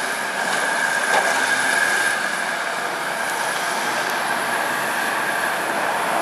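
Steady mechanical noise with a constant high-pitched squeal held throughout.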